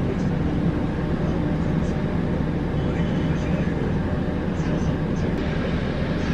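Steady low rumble of a bus in motion, engine and road noise heard from inside the passenger cabin.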